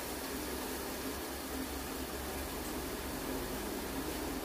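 Steady, even hiss of ginger-garlic-onion-chili masala paste frying gently in oil in a steel pot, with no stirring.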